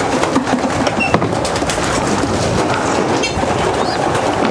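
A loft full of young racing pigeons stirring: wings flapping, soft cooing and small scuffs and clicks, over a steady rushing noise.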